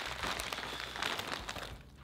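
Plastic bag of Kinder Bueno Mini chocolates crinkling as a hand rummages inside it and pulls out individually wrapped pieces: a dense run of crackles that fades near the end.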